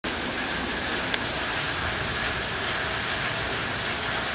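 Heavy rain pouring down in a steady, dense hiss, with one light click about a second in.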